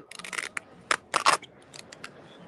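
Short scraping and rustling noises of a phone being handled close to its microphone, in several bursts with a few light clicks near the end.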